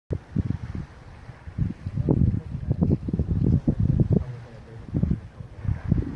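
Wind buffeting the microphone in irregular gusts, a low uneven rumble.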